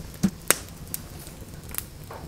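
Wood campfire crackling: a few sharp pops, the loudest about half a second in, over the steady low rush of the flames.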